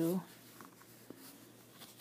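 Faint rustling and rubbing of a fabric-and-paper quilt block being handled in the hand, with a small tick about a second in.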